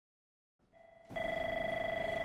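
Desk telephone ringing with an electronic warbling tone. It comes in faintly after a moment of silence, about three-quarters of a second in, and rings louder from about a second in.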